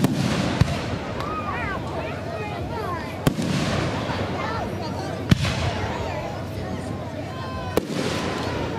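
Aerial firework shells bursting overhead: four sharp bangs a couple of seconds apart, each with a short rumbling echo, the loudest about five seconds in.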